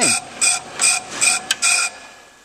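Ammco brake lathe cutting bit scraping a spinning brake drum in short, even strokes about three times a second, stopping near the end. It is a light scratch cut, made to check whether the drum is squared to the lathe arbor.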